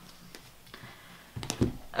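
Quiet room tone with a couple of faint clicks, then a short cluster of sharp clicks and a low thump about one and a half seconds in.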